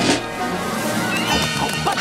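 Cartoon soundtrack music, opening with a sudden loud hit.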